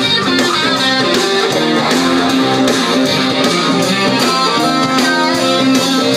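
Live rock band playing an instrumental passage: electric guitars over bass and drums, loud and steady.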